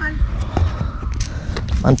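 Scattered soft knocks and rustles, with an unsteady low rumble of wind on the microphone. A man says "mantap" at the very end.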